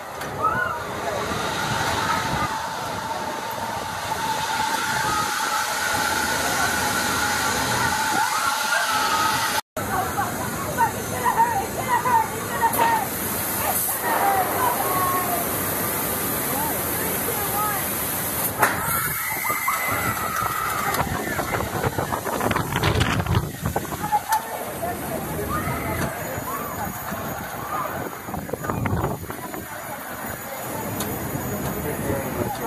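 Steady rushing air noise, like wind on the microphone, with indistinct voices through it. The sound cuts out completely for a moment about ten seconds in.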